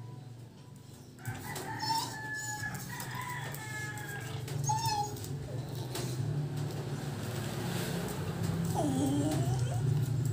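Chickens calling, with a rooster crowing several times in the first half, over a steady low hum. Near the end there is a short call that dips and rises in pitch.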